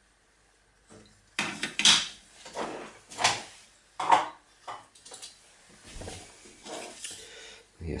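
Small hard plastic parts handled and knocked on a hard tabletop: a run of irregular clicks and light clatter starting about a second and a half in, growing fainter near the end.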